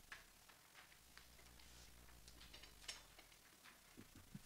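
Near silence, with faint scattered clicks and rustles of sheet music being handled and a faint low hum in the middle.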